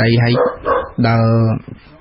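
Only speech: a man's voice talking in a radio news narration, with one drawn-out syllable about a second in.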